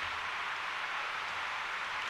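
Steady background hiss with a faint low hum, the room tone of the chamber; no distinct sounds stand out.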